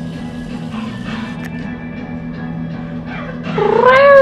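Background rock music with guitar plays throughout. Near the end a domestic cat gives one loud meow that rises in pitch and then holds.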